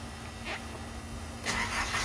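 Nissan D21's 2.0-litre four-cylinder engine being started with the key: the starter cranks during the last half second, and the engine fires just at the end.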